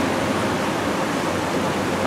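Steady, even rushing noise with no speech and no distinct events.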